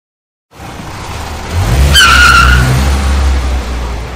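Car sound effect: an engine running that starts about half a second in and grows louder, with a brief tyre squeal about two seconds in.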